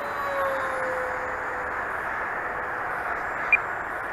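Faint whine of a distant electric RC flying wing's motor and propeller, dropping slightly in pitch and fading over the first couple of seconds, under a steady rushing hiss.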